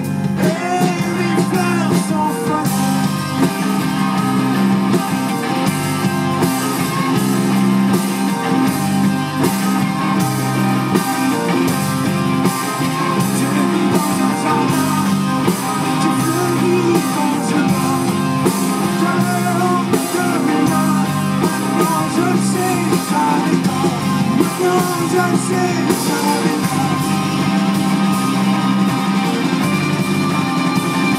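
A live rock band playing a song at steady full volume, led by electric guitars.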